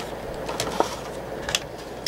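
Crafting tools and paper being handled on a table: a few light clicks and taps, the sharpest about one and a half seconds in.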